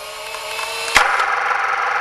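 Sound-effect stinger: a hissing mechanical whirr with steady tones in it, cut by a sharp click about a second in, after which the whirr grows louder.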